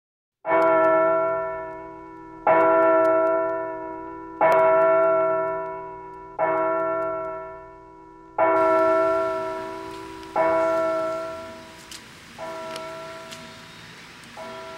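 A single church bell tolling slowly as a funeral knell, struck seven times about every two seconds. Each stroke rings out at the same pitch and fades before the next, and the last two are weaker.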